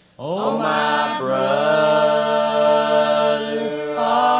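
Gospel vocal group singing in harmony: after a brief silence, several voices slide up into a chord and hold long, steady notes.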